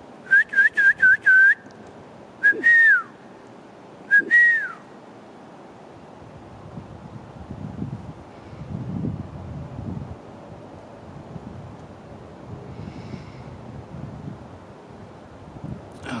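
A person whistling: five short quick notes in a row, then two longer whistles that each rise and then fall away.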